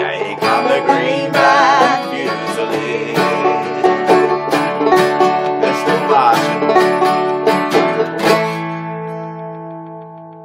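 Banjo and steel-string acoustic guitar playing the closing bars of a folk tune together, with quick plucked banjo notes over strummed guitar. About eight seconds in they strike a final chord that rings on and fades.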